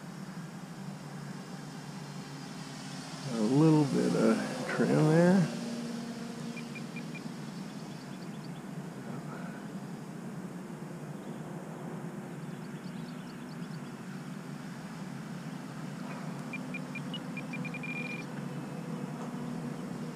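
Steady distant drone of an electric RC biplane's motor and propeller, with short high beeps from the radio transmitter as the aileron trim is clicked: a few about six seconds in and a quick run of them near the end.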